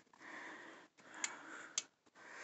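Two faint, sharp clicks about half a second apart in the second half, a lamp switch being worked, over soft breathy noise.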